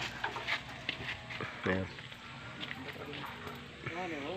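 Low background voices with scattered light clicks and knocks from men handling the wire of a wire-mesh pigeon cage, and a short voice sound about halfway through.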